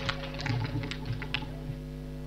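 Microphone being handled on its stand, giving a scattering of light clicks and taps, over a steady electrical hum through the PA system.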